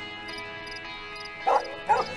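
Two short dog barks in quick succession about a second and a half in, over a held chord of background music.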